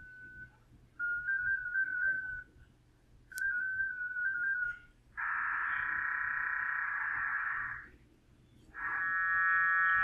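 Amateur-radio digital-mode data tones from FLDigi: twice a single tone stepping slightly in pitch (the mode-identifying handshake), then a wide block of several steady parallel tones for about two and a half seconds as the PSK-125RC5 data is sent, and another multi-tone burst near the end. The mode is too wide a bandwidth for the acoustic coupling, so the copy comes out garbled.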